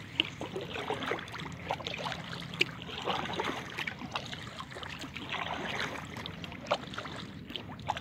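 Kayak paddling on calm water: the paddle blades dip and drip, making small, irregular splashes and trickles beside the inflatable kayak.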